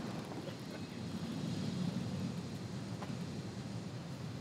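Steady low rumble of vehicle noise with no distinct events.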